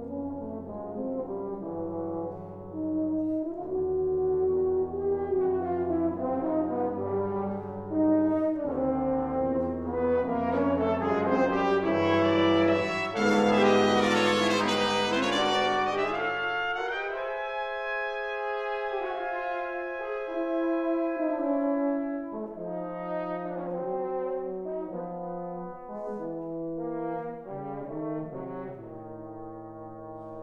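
A brass octet (trumpets, horn, trombones, euphonium and tuba) plays sustained chords in a concert hall, swelling to a loud climax about halfway through. The low brass then drop out while the upper instruments hold long chords, and the low voices come back in near the end.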